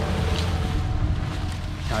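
Steady low rumble of wind buffeting the microphone in the open.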